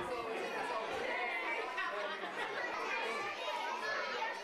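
Crowd chatter of children and parents: many voices talking at once in a steady hubbub, with no one voice standing out.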